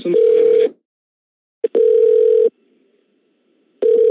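Telephone call-progress tone on the line: a single steady mid-pitched beep, each under a second long, sounding three times about two seconds apart.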